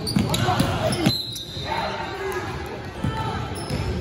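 A basketball bouncing on a hardwood gym floor during a game, with several bounces in the first second or so, amid players' voices in a large gym.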